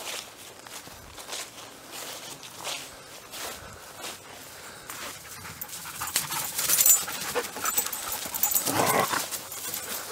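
Footsteps through grass, then two dogs, one a German shepherd, coming up close and panting hard, louder over the last few seconds.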